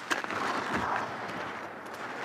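Ski edges scraping and carving on hard-packed snow as a giant slalom racer turns through the gates: a hissing scrape that swells over the first second and then eases.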